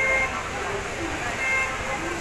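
Two short horn toots, the first right at the start and the second about a second and a half in, over a steady background of voices and station bustle.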